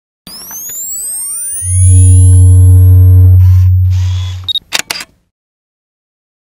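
Electronic logo sting: rising swept whooshes lead into a loud, deep sustained tone lasting about three seconds, which fades and is followed by a few sharp clicks about five seconds in.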